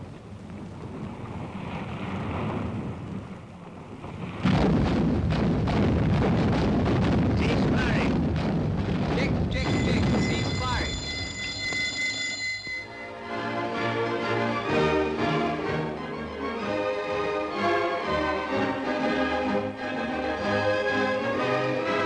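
A loud rushing noise of wind and sea starts suddenly a few seconds in, with a high steady tone sounding over its last few seconds. Film-score music with bass notes then takes over for the rest.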